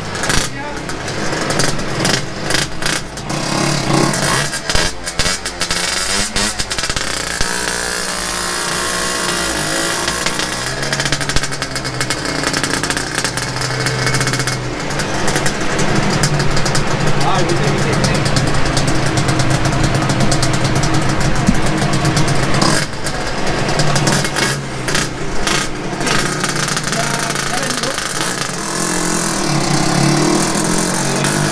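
Yamaha RXZ's single-cylinder two-stroke engine with an open exhaust, running loud and being revved, its pitch rising and falling over the first several seconds, then held steadier for a stretch before varying again near the end.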